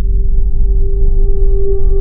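Cinematic logo-intro sound effect: a steady held tone over a loud deep rumble, with fainter higher tones ringing above.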